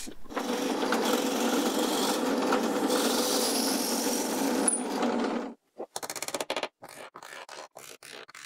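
A drill running steadily for about five seconds as it bores out screw holes in plywood to enlarge them for dowels, then it stops suddenly. Short, quieter knocks and clatter from handling follow.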